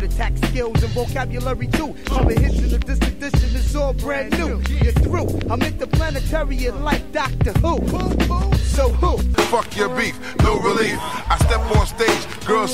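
Hip hop music with rapped vocals over a heavy bass line and a steady beat. The bass drops out about nine seconds in.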